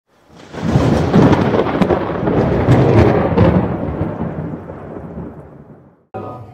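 A loud rolling rumble like thunder that swells in about half a second in, with a few sharp crackles in the first few seconds, then slowly fades away.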